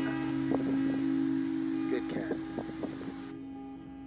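Acoustic guitar chord ringing out and slowly fading, with a man's short laugh at the start. The outdoor background noise cuts off a little past three seconds in, leaving the guitar alone.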